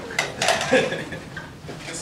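Bustle of a class moving about in a lecture hall: a few sharp clatters and knocks in the first half second, with scattered indistinct voices.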